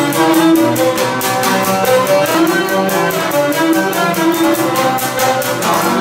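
Cretan lyra bowing a syrto dance melody over a laouto strummed in a steady, quick rhythm.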